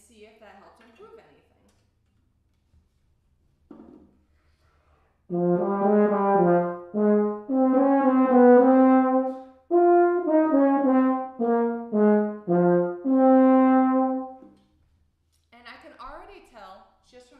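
A low brass instrument plays a short phrase of separate notes starting about five seconds in and ending on a held note. It is a recorded four-measure practice excerpt being listened back to.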